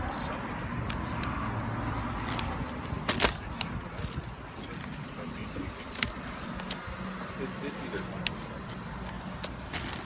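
Close-up chewing of a big sub sandwich, with a few sharp clicks, the loudest about three seconds in, over a steady low hum of road traffic.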